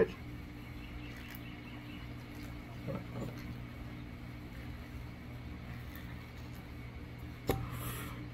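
A steady low hum, with a few faint gulps about three seconds in as beer is drunk straight from a glass bottle, and a sharp click shortly before the end.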